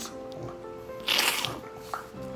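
Soft background music with sustained notes, and about a second in a man who is crying takes one short, sharp sniff.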